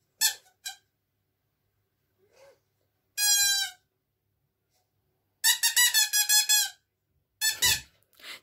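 Toy pipe blown in short, high, steady toots: one about three seconds in, a quick run of toots from about five and a half seconds, and another brief toot near the end.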